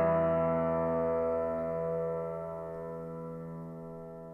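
Grand piano's last chord of the song ringing out and slowly fading away, its notes held with no new notes played.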